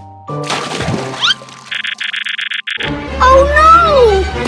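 Cartoon sound effects over background music. Whistle-like sounds slide up in pitch in the first second, and a buzzing electronic tone lasts about a second in the middle. Near the end comes a squeaky, voice-like call that slides down in pitch.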